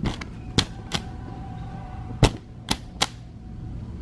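Flap of a pet door swinging and clacking against its aluminium frame as it is pushed by hand: about six sharp clacks at irregular intervals.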